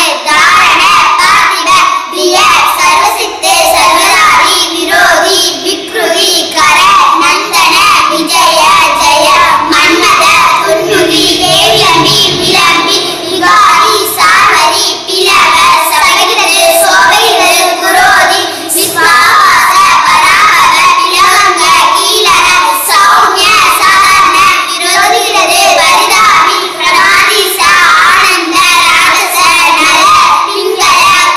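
Three young children singing together in unison, a continuous sing-song vocal line with few breaks.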